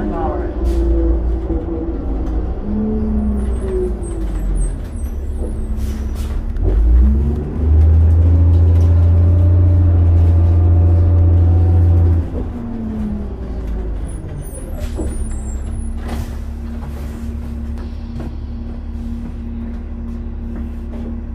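Diesel engine of a New Flyer D40LF city bus heard from inside the cabin. Its note falls over the first few seconds, then climbs and falls again with a loud deep rumble for about four seconds in the middle, then settles into a steady hum. A few sharp knocks can be heard.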